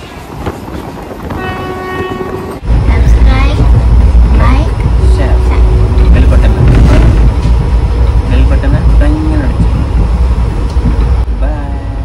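Passenger train horn sounding briefly about a second in, then from about two and a half seconds a loud, steady low rumble of the moving train heard from inside the coach, with voices over it.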